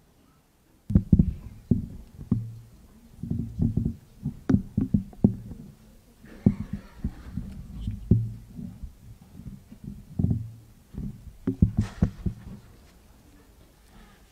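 Irregular low thumps and knocks close to a pulpit microphone: the mic and things on the wooden pulpit being handled, with a brief rustle about halfway through and again near the end.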